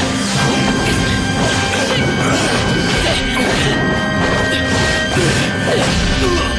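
Anime fight soundtrack: background music with repeated crashing, striking impact sound effects.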